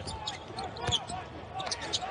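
A basketball being dribbled on a hardwood court, with sharp bounces about a second in and near the end, amid short squeaks of sneakers on the floor.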